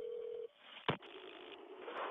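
A telephone call heard over the line: a steady tone that cuts off about half a second in, a sharp click a little before one second as the call connects, then quiet line hiss.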